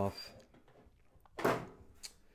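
A single short clack about one and a half seconds in as the magnetic kickstand back cover is pulled off a Lenovo Chromebook Duet tablet.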